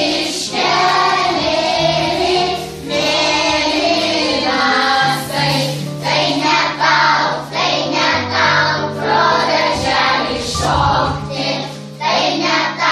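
A group of children singing a song together, over an accompaniment of held low notes that change every second or two.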